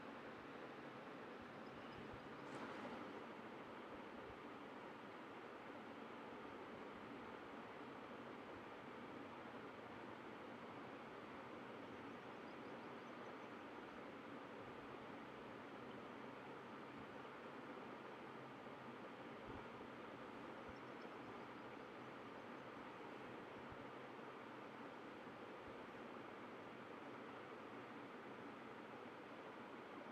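Near silence: a faint, steady hiss of room tone or recording noise.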